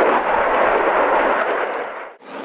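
Jet noise from a Dassault Rafale's twin Snecma M88-2 turbofan engines as the fighter flies past, a loud steady rushing noise that fades out near the end.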